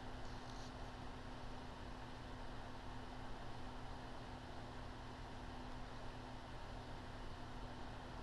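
Quiet room tone: a faint, steady hum over low hiss, with nothing else happening.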